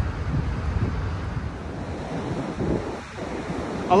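Sea surf washing in over a pebble shore on a stormy day, with wind blowing across the microphone.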